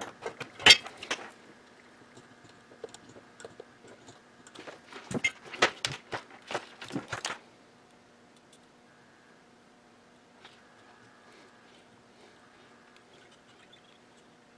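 Light clicks and clatter of small metal parts and tools being handled on a workbench while a connector pin is soldered to a wire. The clicks come in two bursts, one about a second in and one from about five to seven seconds in, then only a faint steady hum remains.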